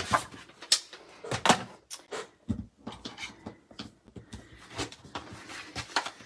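Cardstock being handled on a paper trimmer and worktable: a string of short knocks, taps and paper scuffs as the sheet is lifted off the trimmer and laid down for folding.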